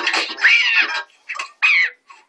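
A cartoon cat character's whining, meow-like cries: a long one that rises and falls, then a shorter one near the end.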